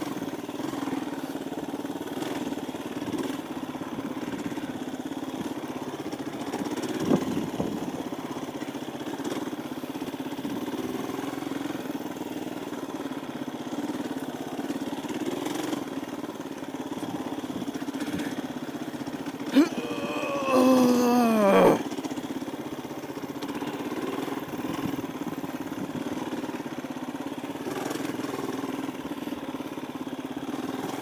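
KTM 350 EXC-F's single-cylinder four-stroke engine running steadily at a moderate pace. About twenty seconds in there is a louder burst of about two seconds whose pitch falls away before it stops abruptly.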